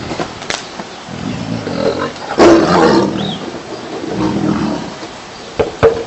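A tiger roaring, the loudest roar about two and a half seconds in.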